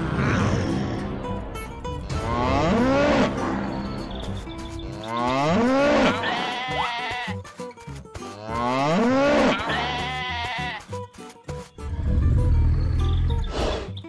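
A sheep bleating three times, each about a second long with a pitch that rises and falls, over background music; a low rumble follows near the end.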